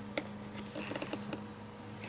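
Faint light clicks and taps of plastic stamping tools being handled, a clear stamp block and the plastic stamping gear, over a steady low hum.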